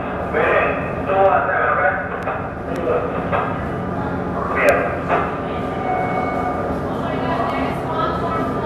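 People talking in a room over a steady low hum. A short, sharp sound stands out above the voices a little over halfway through.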